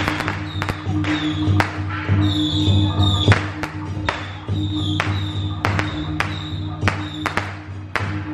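Temple-procession music with a steady pulsing beat and a high wavering melody line, cut through by irregular sharp cracks, like firecrackers going off in the smoke-filled street.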